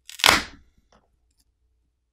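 A single short crackle, about half a second long, as a lithium-ion phone battery is pried up with a metal pry tool and its alcohol-softened adhesive lets go.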